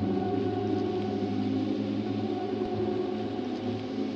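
DIY modular synthesizer with a sampler module playing a dense, steady drone of several layered low tones with a grainy, noisy texture.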